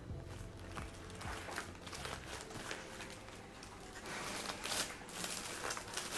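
Faint rustling and small taps of hands handling kraft-paper-wrapped gift boxes and jute twine, growing busier in the second half.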